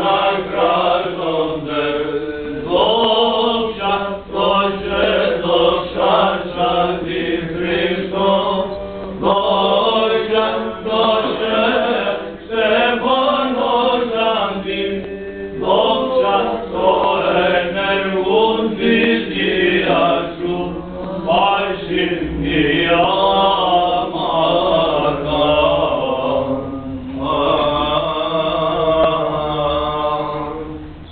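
Byzantine chant of the Greek Orthodox Divine Liturgy: chanters sing a slow, ornamented melody with long wavering notes over a steady held drone note.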